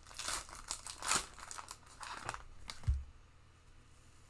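Foil trading-card pack wrapper crinkling and tearing as the pack is opened and the cards are pulled out, in a run of sharp rustles. A short, soft thump comes just before the three-second mark.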